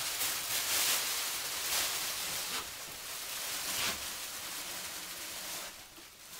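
Polythene sheeting rustling and crinkling as it is handled and draped over pots, in irregular swells.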